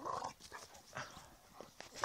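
Two dogs play-fighting, making several short vocal sounds with scuffling between them.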